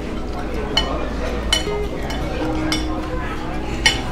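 A metal spoon clinking against a ceramic soup bowl about four times, the last clink near the end the loudest.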